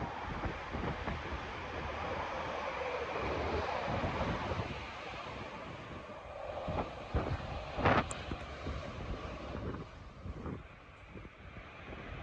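Wind buffeting a phone microphone in uneven gusts, a low rumbling rush over a steady outdoor noise, with a few brief knocks about eight seconds in.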